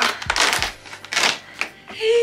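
Cardboard advent calendar door being pulled and torn open by hand: a few short bursts of tearing and crinkling with soft knocks of the box being handled.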